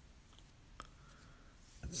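A pause in a man's talk: faint room noise with one small click a little under a second in, then his voice starting a word at the very end.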